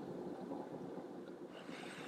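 Faint, steady room tone: a low, even background hiss with no distinct events.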